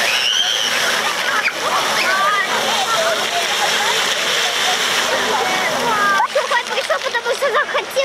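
Water jets of a splash-pad fountain spraying steadily, with children shouting and squealing as they play in the spray. About six seconds in, the spray sound drops away and a child's voice comes close.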